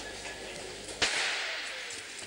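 Starter's pistol fired once about a second in, a sharp crack that echoes round the indoor ice rink, signalling the start of a short track race.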